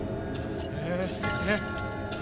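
Film soundtrack audio from an action scene: background score with held high tones that come in about a second in, a metallic jingling, and a brief voice.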